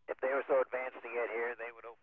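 Speech only: a voice over the shuttle's air-to-ground radio link, thin and narrow-band.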